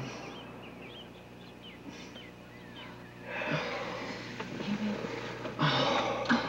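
A man breathing hard in pain, with wheezing, hissing breaths and short low groans, starting a little past halfway and swelling again near the end. Faint high chirps sound in the first half.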